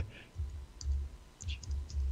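A few light clicks of computer keyboard keys as a ticker symbol is typed in, scattered between about one and two seconds in, over soft low thuds.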